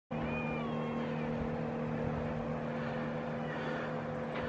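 A steady low hum throughout, with a couple of short, high, whistling calls that bend in pitch over it just after the start.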